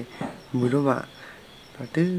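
Crickets chirping steadily in the background, a faint high repeating trill, with a person's voice speaking briefly about half a second in.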